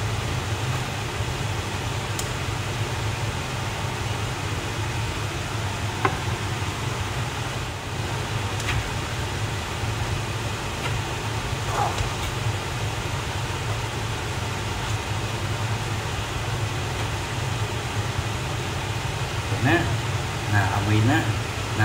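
Yakisoba noodles and vegetables sizzling in a wok as they are stir-fried with a spatula, over a steady low fan hum. A couple of light spatula taps against the pan.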